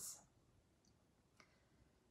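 Near silence: room tone, with one faint click about a second and a half in.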